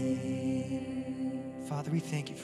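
Live worship band holding a soft, steady chord on keyboard, guitar and cello, with a voice coming in near the end.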